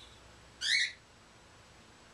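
A pet bird's single short call, rising in pitch, about half a second in; otherwise faint room tone.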